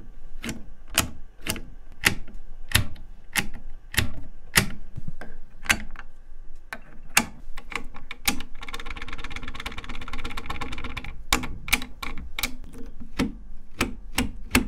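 Close-miked clicks and taps on the controls and keys of an unplugged Polivoks synthesizer, so only its mechanical parts sound, at about two sharp clicks a second. In the middle comes a few seconds of quick continuous rattling, then the clicks come faster.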